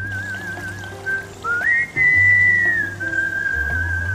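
A high whistled tune with wavering held notes, over light background music. It glides up to a higher note about one and a half seconds in and settles back to a steady lower note near the end.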